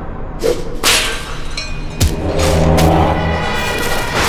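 Dramatic TV-serial sound design: a run of whooshing, whip-like sound effects, the sharpest crack about two seconds in, with a low sustained music chord held under the second half.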